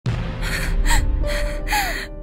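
A voice taking about four quick, gasping breaths over a low, steady music drone.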